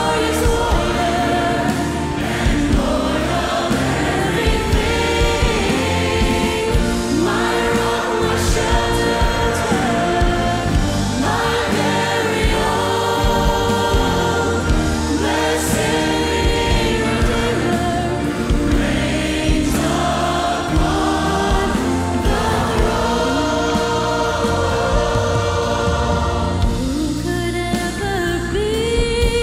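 A worship band and choir performing a contemporary Christian song: lead singers backed by a full choir, electric guitar and keyboard, at a steady level.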